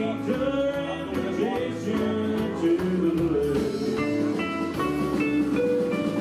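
Live country band playing an instrumental break without vocals: electric guitars, steel guitar, bass and drums.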